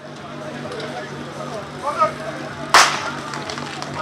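A single sharp starting-pistol shot, about three-quarters of the way in, signalling the start of a firefighting-sport fire attack. Before it a short spoken command and a steady low hum.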